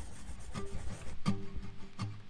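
Crackling static full of small clicks, in the style of an old radio or record, with faint low musical notes coming in about half a second and again just over a second in.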